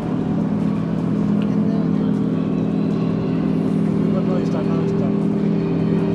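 A steady mechanical hum with several held low tones, running evenly throughout, under faint background voices.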